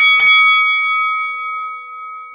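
A bell-like chime sound effect, struck twice in quick succession and then ringing out, slowly fading.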